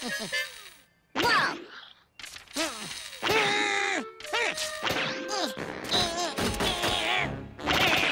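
Cartoon soundtrack: comic music with several sudden whacks and thuds, and wordless vocal sounds from the character, rising and falling in pitch.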